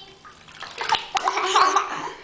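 Bathwater splashing and sloshing in a tub as a toddler plays in it, quiet at first and then a loud flurry of splashes from a little under a second in.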